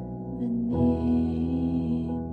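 Slow piano music: a held chord, then a new, fuller chord with a low bass note struck about three-quarters of a second in and left sounding.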